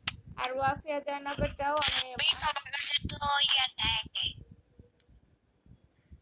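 A person's voice heard over a video call, talking for about four seconds with a harsh, hissy edge, then near quiet with one faint click.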